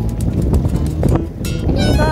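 Heavy wind buffeting the microphone while riding along at speed, a loud low rumble with scattered small clicks and rattles. A voice starts up near the end.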